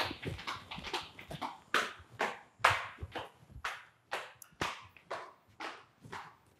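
Footsteps on a hard tiled floor, about two a second, growing fainter near the end.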